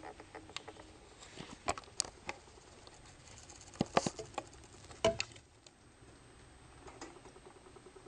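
A spatula tapping and scraping in a frying pan as it spreads omelette egg mixture around, in scattered light clicks with a few louder taps about four and five seconds in.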